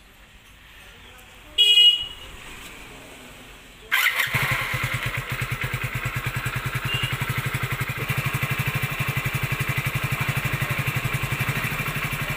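A short loud beep about one and a half seconds in, then a Hero Splendor Plus BS6 motorcycle's single-cylinder fuel-injected engine starting about four seconds in and settling straight into a steady, evenly pulsing idle, its idle speed being checked.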